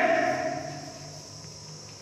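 Chalk writing on a blackboard: faint scratching and light tapping strokes, after a man's drawn-out word fades in the first half second.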